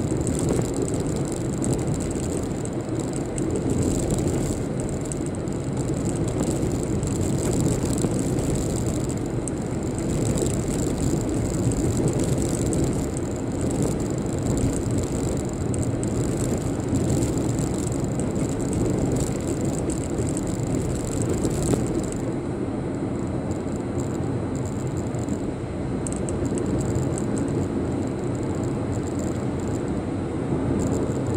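Steady road and engine noise inside a car's cabin while it drives along a highway, with a faint steady high whine; the highest hiss drops away a little over two-thirds of the way through.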